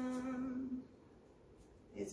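A woman humming one steady, level "mmm" note for about a second at the start, followed by quiet room tone.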